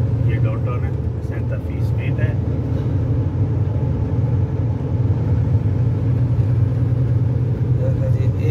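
Steady low drone of engine and tyre noise heard inside the cab of a vehicle cruising on a freeway.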